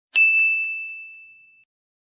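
A single bright bell-like ding that rings out with one clear tone and fades away over about a second and a half.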